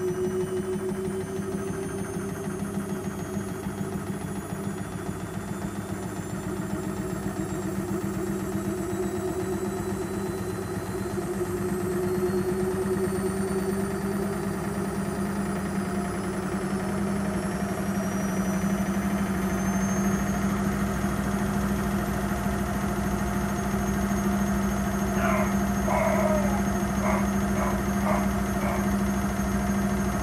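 AEG Öko Lavamat 6955 Sensorlogic front-loading washing machine spinning up after draining. The motor's whine rises steadily in pitch for about twenty seconds, then holds at full speed over a steady hum.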